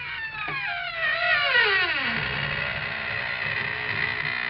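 The famous creaking-door sound effect of Inner Sanctum: a long, slow squeak of a door hinge that falls steadily in pitch over about two seconds. It gives way to a sustained musical chord.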